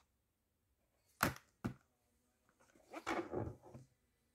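Hard plastic VHS cassette and case being handled: two sharp clacks a little over a second in, then a longer scraping rustle of plastic near the end.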